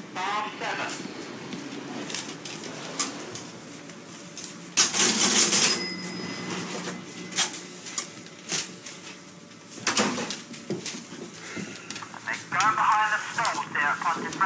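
Betting-shop counter sounds as a bet is taken: scattered clicks and knocks from the clerk's cash register, with a louder noisy burst of about a second some five seconds in and another sharp one about ten seconds in, over murmured voices.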